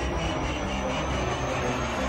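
Horror-trailer sound design: a dense, steady low rumbling drone with a faint high tone slowly rising through it.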